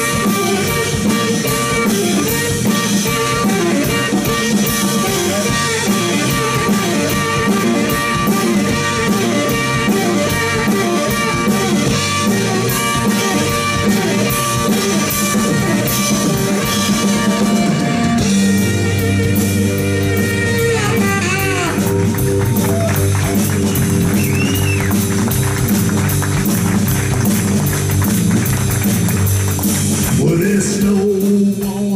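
Live blues-rock band playing an instrumental section: a saxophone solo over electric guitar, bass guitar and drum kit. The arrangement changes about two-thirds of the way through, and the higher parts drop away.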